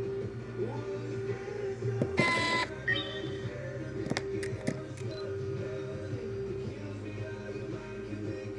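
Music from an FM radio broadcast plays steadily. About two seconds in there is a short, bright tone, and a few sharp clicks follow around four to five seconds.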